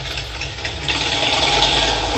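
A steady mechanical running noise, a low rumble with a hiss above it, the hiss growing louder about a second in.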